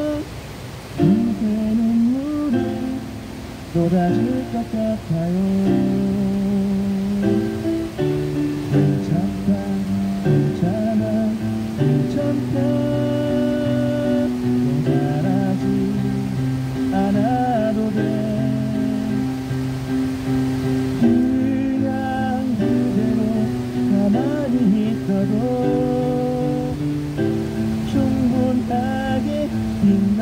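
A man singing a pop song into a microphone, amplified, over electronic keyboard accompaniment with a plucked, guitar-like sound and sustained chords.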